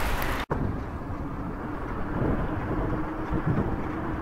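Steady rumble of wheels rolling fast along pavement, with wind on the microphone; the sound cuts out for an instant about half a second in, then a faint steady hum joins the rumble.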